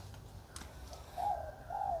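A bird calling faintly: two short notes a little past one second and again near the end, with a light click about half a second in.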